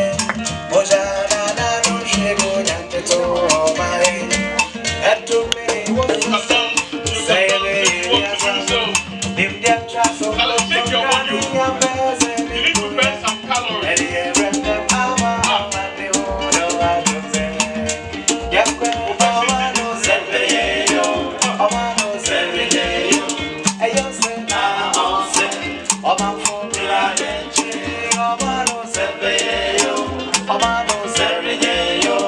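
Live indigenous Ghanaian acoustic band: a steady, fast shaking of a bead-netted gourd rattle (axatse/shekere) under strummed acoustic guitar and voices singing.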